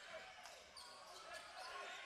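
Faint indoor basketball court sound: a ball bouncing on the hardwood floor over the low murmur of an arena crowd.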